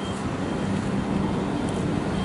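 Steady low rumble of heavy vehicle engines running, from armoured police vehicles standing on the road.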